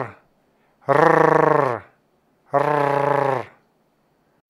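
A man imitating a cicada chorus with his voice: long, rough rolled-R trills, each about a second long with short silent gaps between. One trill ends just at the start, and two more follow.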